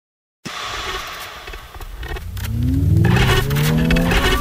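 A car sound effect starts suddenly about half a second in, first as a loud rushing noise, then as an engine revving up with steadily rising pitch.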